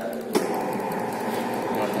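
A sharp click about a third of a second in, followed by a steady mechanical hum with a held tone.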